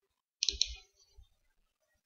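Computer mouse clicking, one short burst about half a second in and a faint tick a little after a second.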